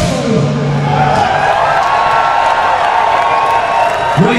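Large crowd cheering and screaming as a live rock song finishes, with the band's last held note ringing out for about the first second.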